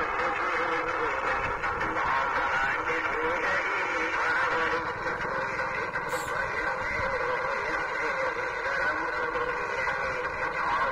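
A horn loudspeaker playing a song, tinny and narrow in range, at a steady level throughout.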